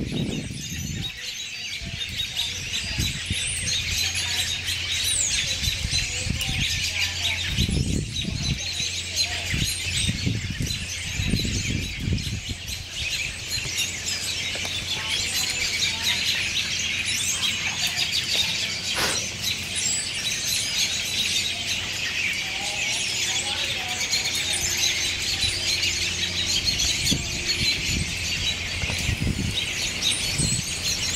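A large flock of American robins calling, a dense, continuous chorus of chirps from many birds at once.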